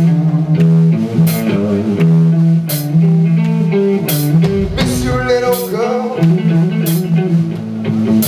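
A blues-rock power trio playing live: electric guitar lines over held bass guitar notes and a drum kit, with cymbal crashes about every second and a half.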